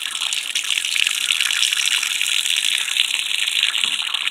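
A steady stream of water pouring from the brass faucet of a 55-gallon plastic rain barrel and splashing below.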